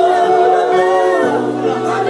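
A church congregation singing a praise song together, many voices holding long notes that shift slowly in pitch.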